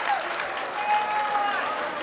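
Spectators at a football match applauding, with shouted voices over the clapping, one call held for about half a second near the middle.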